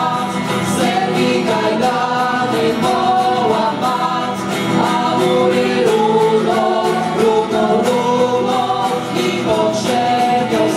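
A school vocal ensemble singing a Polish insurrection song together, accompanied by acoustic guitar.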